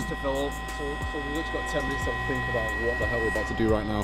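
Small electric air pump running steadily with a constant whine, inflating a rubber life raft, under quieter voices talking.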